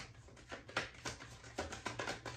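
A tarot deck shuffled between the hands: faint, irregular soft taps and slides of cards against cards.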